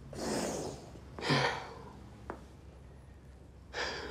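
A distressed teenage boy close to tears breathing heavily twice, the second breath louder with a short voiced catch, like a sigh or stifled sob.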